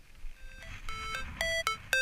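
Electronic carp bite alarm beeping in short bleeps of two alternating pitches. The bleeps start about half a second in and come quicker and longer, the sign of line being pulled through the alarm on a take.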